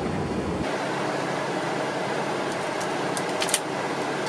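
Steady rushing of a blower fan, with a faint low rumble beneath it that stops under a second in. A few faint light clicks of handled metal parts come in the second half.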